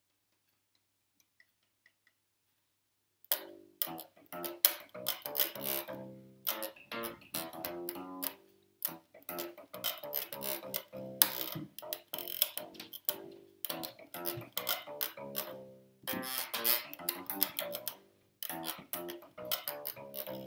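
Unplugged 1965 Fender Precision Bass played fingerstyle and heard acoustically, starting about three seconds in, each note with a sharp string-attack click. It is fitted with Allparts bridge saddles, whose touching noises are still a little there but not too bad and even across the strings.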